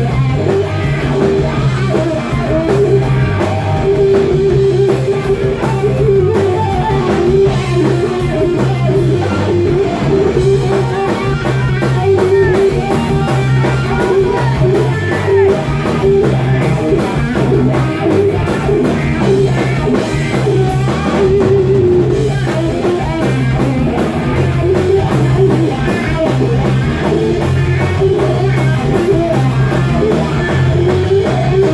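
Live rock band playing loudly through amplifiers: electric guitar, bass guitar and drum kit.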